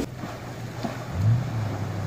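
A four-wheel-drive's engine running as it drives through a deep creek crossing. Its low note rises about a second in and then holds steady, over the wash of water.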